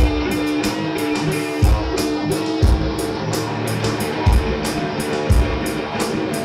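Instrumental stoner rock played live by a band: electric guitars holding sustained notes over drums, with bass-drum hits about once a second and a regular cymbal beat.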